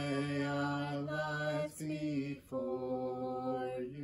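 A woman singing a slow worship song unaccompanied, holding long steady notes: a long note, a shorter one, a quick breath about two and a half seconds in, then another long held note that ends just before the close.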